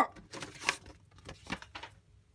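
Paper leaflets and a manual rustling and tapping as they are lifted out of a cardboard box, with a few sharp clicks spread through the moment.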